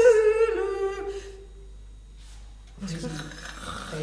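A human voice holding one long hummed note that sags slightly in pitch and fades out about a second in. After a quiet pause, breathy vocal noise starts near the end.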